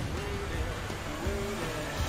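Film-trailer score playing over a dense layer of sci-fi action sound effects during a spaceship chase.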